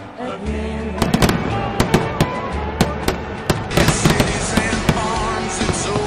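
Fireworks bursting and crackling, a rapid irregular run of sharp bangs starting about a second in, over background music.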